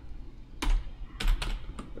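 Computer keyboard being typed: about five separate keystrokes, unevenly spaced, beginning about half a second in.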